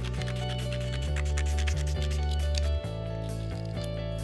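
Background music with a steady beat and a bass line that changes note about a second in and again near three seconds.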